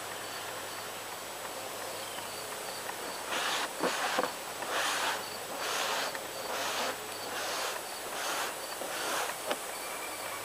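Paper towel rubbing over wet, sealer-soaked paper taped to cardboard: a series of wiping strokes, a little under two a second, starting about three seconds in.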